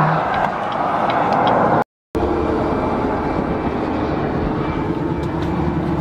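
Steady road and engine noise heard inside the cab of a moving pickup truck. The sound cuts out completely for a moment about two seconds in, then returns.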